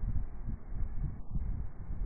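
Wind buffeting a trail camera's microphone: an uneven low rumble.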